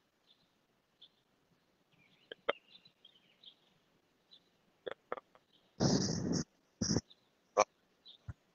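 Live video-call audio dropping out: mostly dead silence with brief clicks and short fragments of sound cutting in and out, the loudest a half-second burst of noise about six seconds in.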